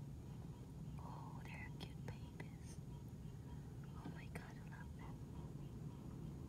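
A person whispering faintly, with a few soft clicks, over a steady low hum.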